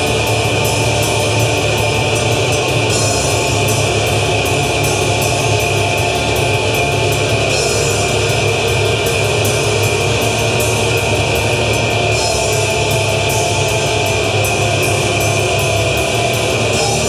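Live heavy rock band playing loud and steady: electric guitars over a drum kit, with quick, even cymbal strikes. The passage is instrumental, with no singing.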